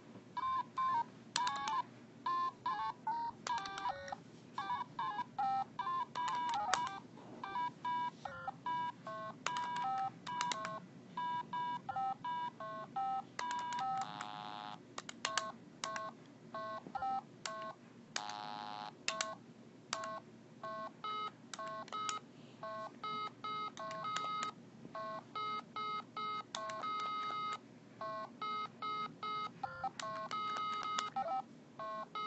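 A Simon carabiner keychain memory game beeping on its own in a rapid, irregular string of short electronic tones at several pitches, with two longer buzzy tones about halfway through and again some four seconds later: the toy is malfunctioning, 'gone crazy'.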